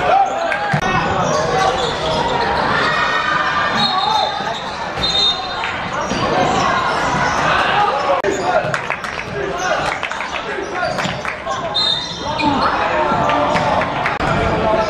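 Basketball game sounds in a large sports hall: the ball bouncing on the court, short sneaker squeaks a few times, and players and spectators shouting and talking throughout.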